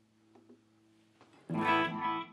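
Electric guitar played through a Line 6 Helix modeler with its mod/chorus echo switched on. A faint low note hangs on, then a chord is struck about one and a half seconds in and rings out.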